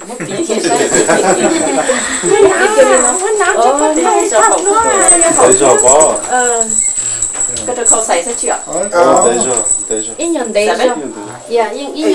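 Several voices talking over one another, in a language the recogniser did not write down, with light jingling from the silver coin pendants on a Hmong jacket as it is put on. A thin steady high tone lies underneath.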